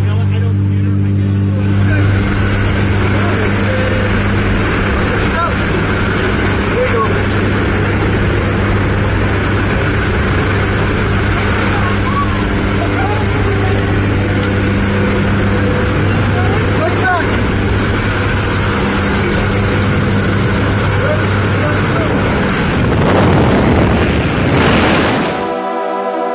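Steady drone of a jump plane's engines and propellers heard from inside the cabin, with loud wind rushing in through the open jump door. The rushing swells near the end as the jumpers leave the aircraft.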